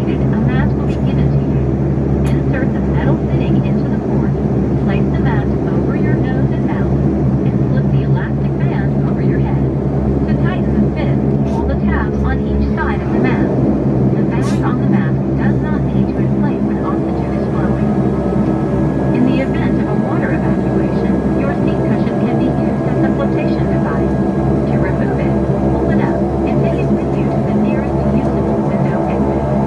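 Saab 340B+ GE CT7-9B turboprop engine and propeller running steadily just outside the cabin window, a deep drone of several steady tones while the aircraft taxis. A faint thin high tone joins about halfway through.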